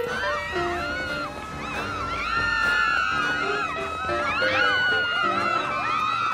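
A crowd of young women shrieking and squealing excitedly as they chase after someone, many high voices overlapping, over a music score with steady held notes.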